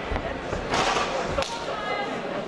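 Shouting voices from the crowd and corners over a clinch in a cage fight, louder in the middle. Two sharp thuds of strikes land, one just under a second in and one about a second and a half in.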